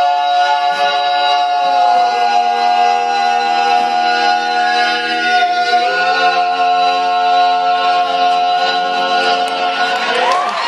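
Male barbershop quartet singing a cappella in close four-part harmony, holding long sustained chords that shift about two seconds in and again about six seconds in. The last chord is held for about four seconds as the song's closing chord.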